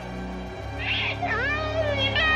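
A woman's high, wavering crying wail starts about a second in, its pitch sliding down and back up, over a low, steady scary-music drone.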